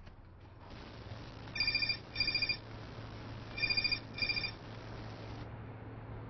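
Mobile phone ringing with an electronic trill: two double rings about two seconds apart.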